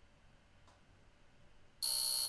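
Near silence, then near the end a single high-pitched electronic beep sound effect starts suddenly and holds steady.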